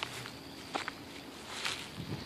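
Footsteps on pavement, three steps about a second apart, over a steady high-pitched insect drone.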